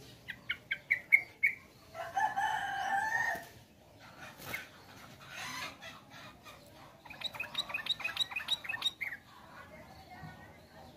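Caged yellow-vented bulbuls calling: a quick run of short, rising notes in the first second and a half, and a fast chattering run of high notes about seven seconds in. A rooster crows about two seconds in, one long call lasting about a second and a half.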